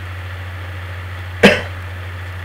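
A person coughs once, short and sharp, about one and a half seconds in, over a steady low hum.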